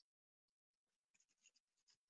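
Near silence: a muted audio line with only a few barely audible faint ticks.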